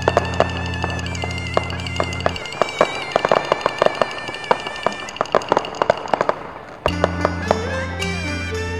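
Aerial fireworks and firecrackers popping in an irregular crackle, thickest in the middle, over music with a held, wavering melody line. A low drone in the music drops out for a few seconds partway through and comes back near the end.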